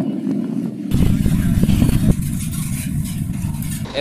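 Freight train wagons in a rail yard: a steady low rumble that becomes heavier about a second in, with a few short metallic knocks over the next second.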